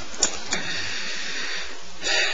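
A pause in speech: steady hiss of room tone, with two faint clicks about a quarter second and half a second in.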